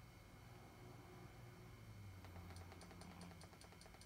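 Near silence with a low hum. In the second half comes a quick run of faint, evenly spaced clicks, about five a second.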